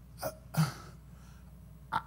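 A man's voice briefly: two short hesitant syllables ("I, uh") near the start, then a pause with only faint room tone.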